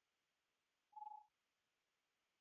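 A single short electronic beep, one steady mid-pitched tone lasting about a third of a second, about a second in, against near silence.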